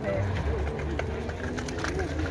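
Birds calling in short, low, gliding notes, over a steady low rumble.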